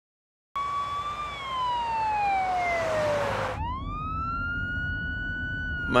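Ambulance siren wailing, starting about half a second in: one long slow downward sweep, then a quick jump back up to a high held tone that slowly sinks. A steady low rumble of the vehicle on the road runs beneath it.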